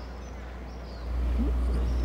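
Quiet outdoor ambience: a steady low rumble that steps up louder about a second in, with a few faint bird calls.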